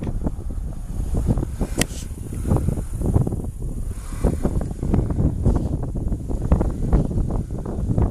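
Wind buffeting an outdoor camera microphone, an irregular low rumble in gusts, with a single sharp click about two seconds in.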